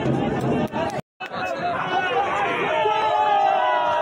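A crowd of protesters, many voices talking and shouting over one another. The sound cuts out completely for a moment about a second in, then the crowd comes back, with held, raised voices toward the end.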